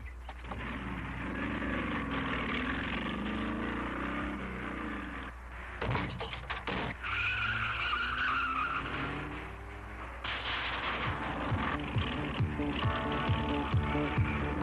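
Car engines revving, their pitch rising and falling, then a tire squeal lasting a couple of seconds about halfway through. Background music with a steady beat comes in for the last few seconds.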